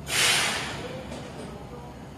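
A commuter train's air brakes releasing: one sharp hiss of compressed air right at the start, fading out within about a second, as the train begins to pull away from the platform.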